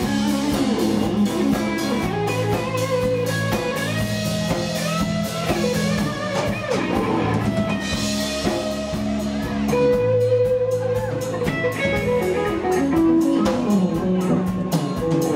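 A live rock band playing: electric guitar, bass guitar and drum kit, over a steady cymbal beat with held and bending guitar notes.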